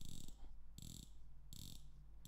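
Casio Duro MDV-106B-2A's 120-click unidirectional bezel being turned by hand: three quick runs of ratchet clicks, one about every three-quarters of a second. Deep, heavy clicks with firm resistance.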